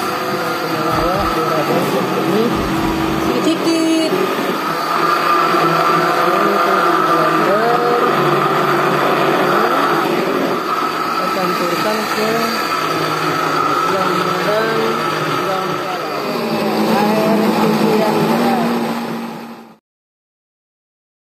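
Electric kitchen blender running steadily, grinding moringa leaves with rice-washing water, with people's voices in the background. The sound cuts off suddenly just before the end.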